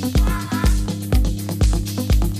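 Electronic dance music from a DJ set: a steady four-on-the-floor kick drum at about two beats a second over a sustained bass line and ticking hi-hats.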